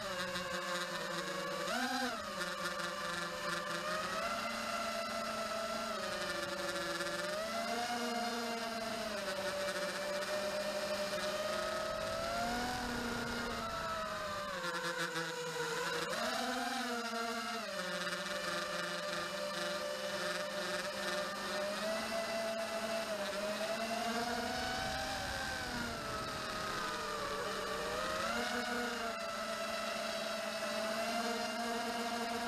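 Eachine Wizard X220 racing quadcopter in flight, its four brushless motors and propellers whining steadily. The pitch swells and sags smoothly several times as the throttle changes.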